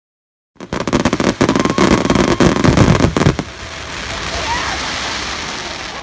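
Fireworks crackling: a dense run of rapid pops and cracks for about three seconds, then a steadier, quieter hiss.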